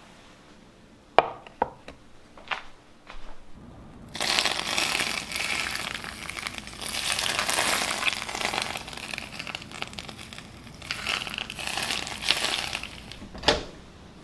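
Hot oil poured from a pan over a steamed fish and its cilantro garnish, sizzling and crackling loudly for about nine seconds, after a few knocks as the plate is set down. A single sharp click comes near the end as a microwave door is unlatched.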